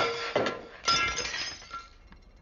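A plate breaking: a sharp crash, a second crash just under a second later, and ringing fragments fading out.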